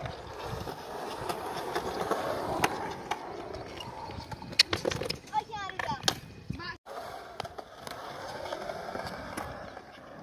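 Skateboard wheels rolling on the concrete of a skate bowl, with sharp clacks of the board; the loudest clacks come a little before five seconds in and again about six seconds in.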